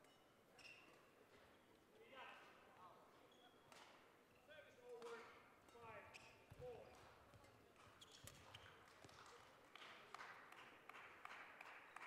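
A faint badminton rally: rackets hitting the shuttlecock in short sharp clicks and shoes squeaking on the court floor.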